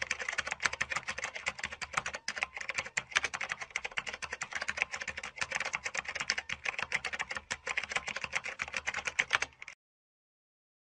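Typing sound effect: a rapid, continuous run of keyboard key clicks that accompanies on-screen text being typed out letter by letter. It cuts off abruptly near the end.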